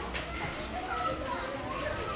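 Children playing and chattering, several high voices overlapping at once.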